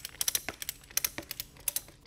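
A ratchet strap's ratchet being worked to tighten a strap around a timber-frame beam, giving a quick, irregular run of sharp metal clicks.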